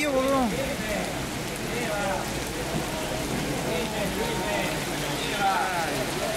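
Heavy rain pouring onto a flooded street, a steady hiss of water that runs without a break.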